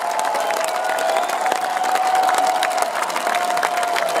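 Large concert crowd cheering and clapping, with sharp claps from hands close by and a steady held note running underneath.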